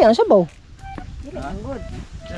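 A spoken 'ah', then quieter talking with a few short, steady beep-like tones in the background.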